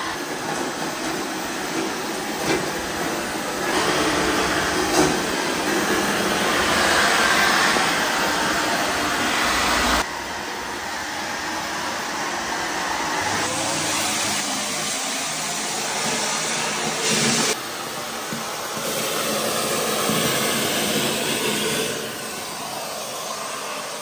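AGARO Primo 1400-watt bagless canister vacuum cleaner running steadily, sucking up scattered debris through its floor brush. Its noise jumps in loudness and tone several times.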